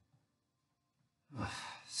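Near silence, then about a second and a half in a man breathes out audibly in a short sigh, running straight into the start of a spoken word.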